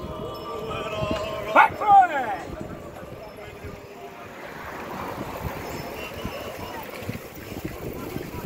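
Voices of riders in a group of cyclists calling out, with two loud shouts about one and a half and two seconds in, then wind and road noise as the group rides on.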